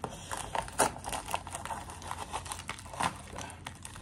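Plastic bubble-wrap packaging crinkling and rustling as it is pulled open by hand, with a couple of sharper crackles about a second in and near the end.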